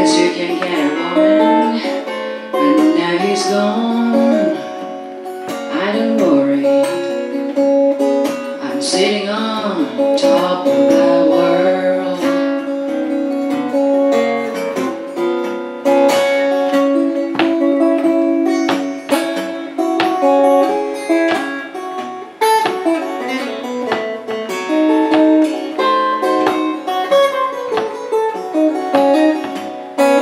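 Acoustic guitar duet playing an instrumental break in a slow country blues: fingerpicked accompaniment on an all-spruce Crescent Moon acoustic guitar, with a lead line of sliding, bending notes over the first twelve seconds or so.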